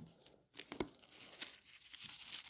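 Faint rustling and crinkling of thin Bible paper being handled, opening with a sharp click, then a few soft short rustles.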